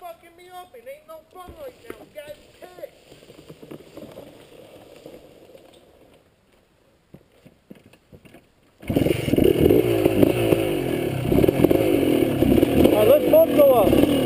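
Faint voices and distant engine sound fade to near quiet, then about nine seconds in an off-road motorcycle engine is suddenly loud, running steadily at idle and low revs.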